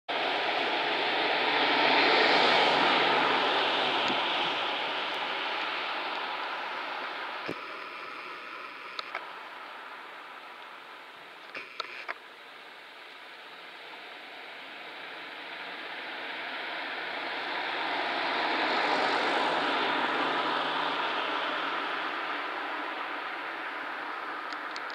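Two passing vehicles: the rushing noise of a car's tyres and engine swells and fades slowly, then a second one swells and fades about seventeen seconds later.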